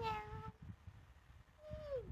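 Domestic cat meowing twice: a short call at the start and a second, falling meow near the end, with soft rustling and knocks of handling underneath.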